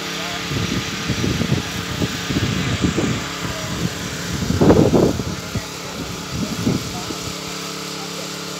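Indistinct voices talking, loudest about halfway through, over a steady low engine hum.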